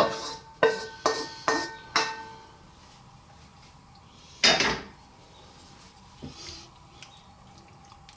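A metal pan knocked four times in quick succession, each knock ringing briefly, as the last of a thick cream sauce is knocked and scraped out of it over a glass baking dish. A single louder clatter comes about halfway through.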